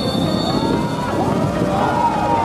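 A referee's whistle blown for the kickoff: a steady high tone that stops less than a second in. Background music with wavering pitched lines plays throughout.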